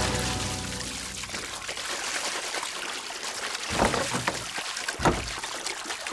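Water pouring and splashing into a wooden bucket, a steady rush with two louder splashes about four and five seconds in. Background music fades out in the first second.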